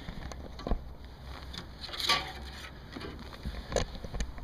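A few scattered knocks and handling noises from gear being moved about in a jon boat, over a low steady rumble of wind.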